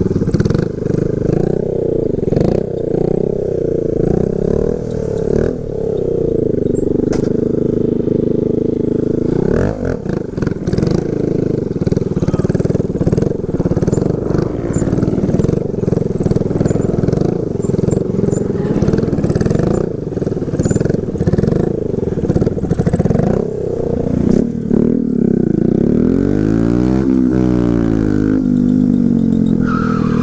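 Small motorcycle engine running under the rider, its pitch rising and falling as the throttle is worked, with the swings widest near the end.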